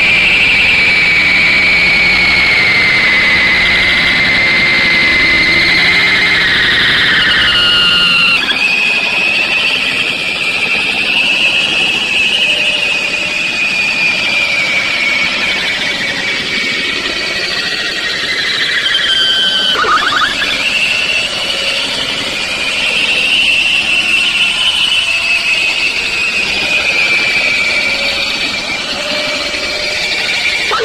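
Harsh, distorted screeching noise from the animation's soundtrack: a loud wash of noise with a high, wavering screech. Over the first eight seconds the screech slowly falls in pitch, then the sound cuts abruptly to a thinner texture, with the screech wavering higher again and a quick downward sweep about two-thirds of the way through.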